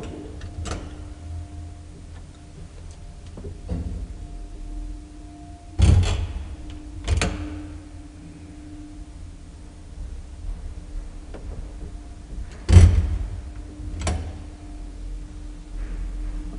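Luth & Rosén elevator running: a steady machinery hum with a series of clunks and thuds. The loudest come about six seconds in and about thirteen seconds in.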